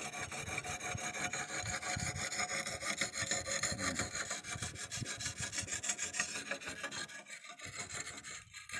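Hand-held whetstone rubbed back and forth along the wet steel blade of a dodos (oil-palm harvesting chisel), honing its edge in rapid repeated gritty strokes. The strokes fade out about seven seconds in.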